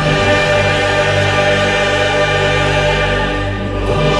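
A choir singing long held chords over an orchestral accompaniment.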